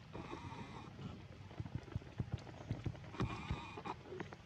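Infant macaque crying: two high, drawn-out cries, one at the start lasting under a second and another about three seconds in.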